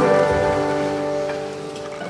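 The final chord of an acoustic guitar and a table zither rings out unchanged and slowly dies away, closing the song.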